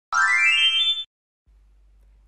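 A cartoon-style sound effect: one bright pitched tone that rises for about a second and stops abruptly, followed by a faint low hum.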